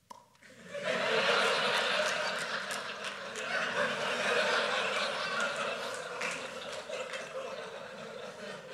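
Audience laughing, swelling in about a second after a short click and slowly dying down.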